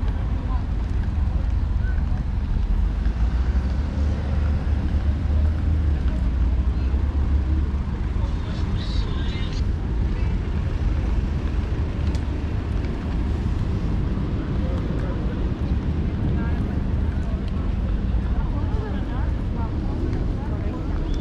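Outdoor street ambience: a steady low rumble of traffic and wind on the microphone, heaviest in the first half, with faint voices of passers-by.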